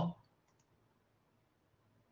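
Near silence with a couple of faint, quick computer-mouse clicks about half a second in; the recorded voice clip being played back is not heard.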